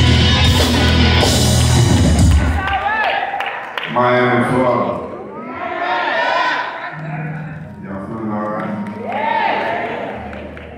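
Live gospel band with drums and electric guitar playing loudly, then cutting off about two and a half seconds in. After it, voices call out and whoop through the church PA in a large, echoing hall, with some cheering.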